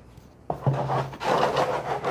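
Freshly mixed plaster being tipped and scraped out of a plastic mixing bucket: a scraping, rubbing noise that starts suddenly about half a second in.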